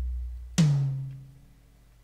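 Single drum samples from a software drum kit, played one at a time. A deep, booming kick dies away, then about half a second in a second, higher drum hit rings with a slightly falling pitch and fades within a second.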